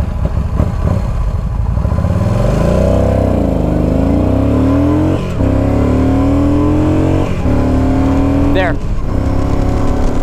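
Yamaha V-Star 950's air-cooled V-twin pulling hard under full throttle in a 0-60 acceleration run, its note climbing in pitch through each gear, with quick upshifts about five, seven and nine seconds in.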